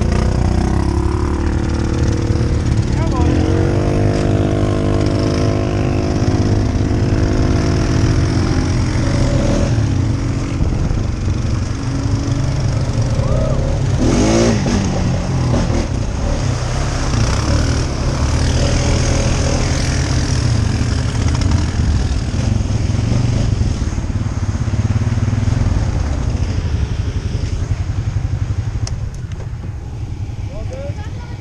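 ATV engine running steadily under way, a constant low drone, with a higher engine note holding for several seconds a few seconds in. The level drops a little near the end.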